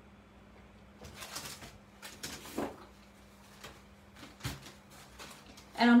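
Handling noise as a wet, open art journal is set down on a table and a paper towel is picked up: several short, irregular rustles of paper and soft knocks over a faint steady hum.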